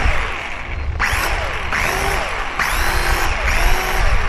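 The two small electric motors and propellers of a Tuffoam micro P-38 Lightning RC plane are run up in short bursts, about four times. Each burst is a high whirring whine that rises as the props spin up and falls as they slow.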